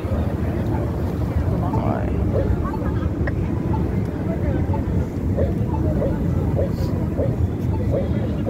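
Steady low rumble of busy city street traffic, with faint short high blips scattered through the second half.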